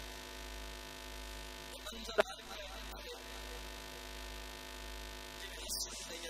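Steady electrical mains hum from a public-address system, with one sharp click about two seconds in.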